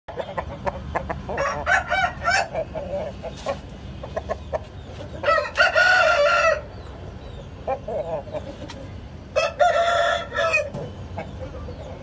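Aseel rooster crowing twice, each crow about a second and a half long, about five seconds in and again near ten seconds, after a run of short clucking calls in the first few seconds.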